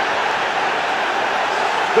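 Football stadium crowd just after a goal, a steady wash of cheering and shouting with no single voice standing out.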